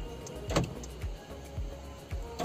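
Tata Manza's central-locking door-lock actuator firing once about half a second in, a short, sharp mechanical clunk, as the lock is worked from the remote key. It sounds over a steady low beat of background music.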